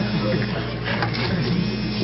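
A pause in a man's preaching, filled by a steady low hum from the recording, with faint voices underneath.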